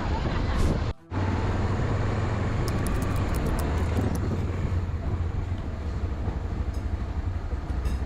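Police motorcycle engine running with a steady low hum as the bike rides, with road and wind noise picked up by the rider's onboard camera. The sound drops out briefly about a second in, then carries on.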